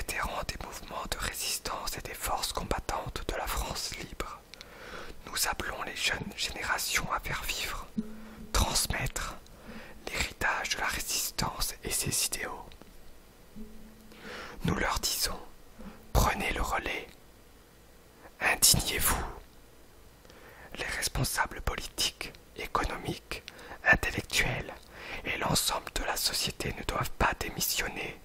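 Whispered speech: a voice reading French text aloud in a whisper, with a few short pauses.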